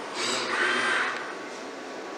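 Mitsubishi Electric industrial robot arm moving in its cell: a burst of mechanical motor and air noise lasting about a second, over a steady background hum.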